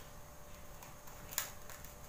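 Quiet handling of a heat-softened PVC sheet being pressed flat by hand, over a faint steady hum, with one sharp click about one and a half seconds in.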